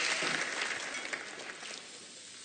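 Audience applause dying away, the clapping thinning and fading steadily.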